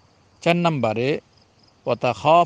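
A man's voice in a lecture: a short pause, then one drawn-out spoken word of a little under a second, another pause, and speech starting again near the end.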